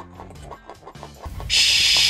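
Faint background music, then a loud 'shhh' shush about one and a half seconds in, lasting about half a second.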